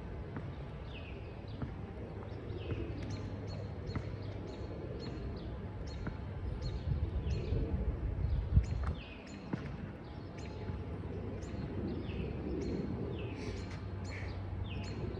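Birds chirping over and over in short falling calls, about one or two a second, over a steady low outdoor rumble, with a few faint knocks.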